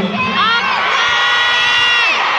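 A large concert crowd of fans screaming and cheering. The high-pitched voices swell in the first half-second and are then held loud and steady.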